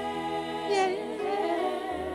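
Gospel singing: voices hold a long note, move down and around in pitch a little under a second in, then settle on a new held note over a steady low bass.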